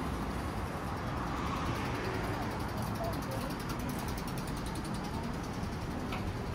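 City street ambience: a steady rumble of traffic, with indistinct voices of passers-by talking.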